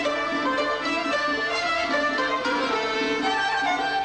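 Instrumental Kurdish folk music: a bowed violin plays the melody over a plucked qanun and accordion.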